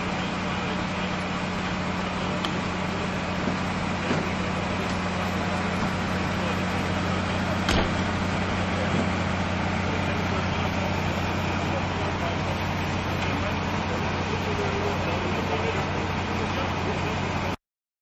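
Steady drone of idling emergency-vehicle engines with a constant low hum, a sharp click about eight seconds in, and the sound cutting off suddenly near the end.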